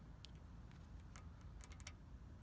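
Near silence broken by a few faint, light clicks of a slack engine timing chain being moved by hand, its tensioner removed so the chain has lots of play.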